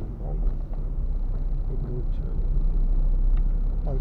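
Car driving, heard from inside the cabin: a steady low rumble of engine and road noise, with faint speech in the background.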